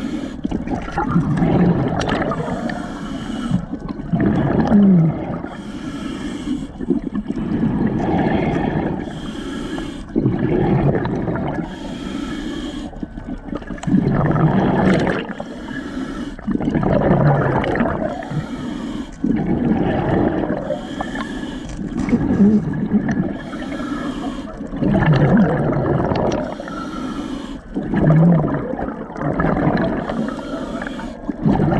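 Scuba diver breathing through a regulator underwater, heard close on the camera: a low rasp on each inhale, then a rush of exhaust bubbles. It goes fast and even, about one breath every three seconds.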